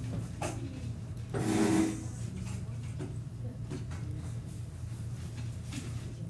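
Classroom room noise: a steady low hum with scattered small knocks and shuffles, and one brief louder sound about a second and a half in.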